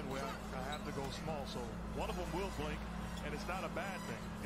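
Televised basketball game audio: a commentator talks at a lower level over the game. A steady low hum runs underneath.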